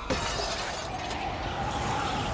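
Glass shattering. A sudden crash just after the start is followed by a continuing spill of breaking, tinkling glass.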